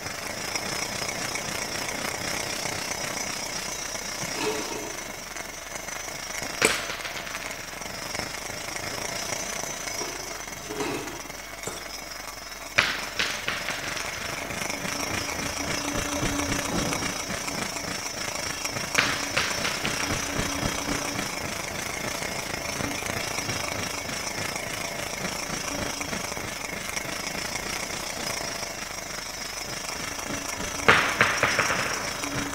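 A small ball set circling in a shallow metal bowl, giving a continuous rattling rumble while the bowl rings steadily in high tones. A few sharp metallic clicks stand out, about a third of the way in, near the middle, and again soon after.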